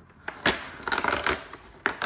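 Perforated cardboard door of a Chupa Chups advent calendar being pressed in and torn open: a sharp snap about half a second in, a stretch of tearing cardboard, and another snap near the end.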